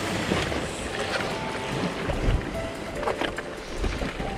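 Sea surf washing over rocks below, with wind buffeting the microphone.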